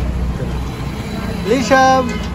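Street background noise with a low vehicle rumble that fades out within the first second. Near the end a child gives a short call that rises and then holds one steady pitch.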